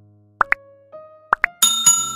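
Subscribe-animation sound effects: two quick double pops like button clicks, about half a second and a second and a half in, then two bright bell dings near the end that ring on. Soft piano music plays underneath.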